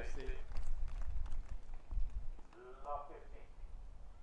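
A person's voice speaking briefly, once at the start and again about three seconds in, over a steady low outdoor rumble.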